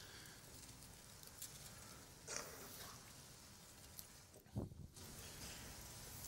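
Near silence: room tone, with a faint brief noise a little over two seconds in and a short low sound about four and a half seconds in.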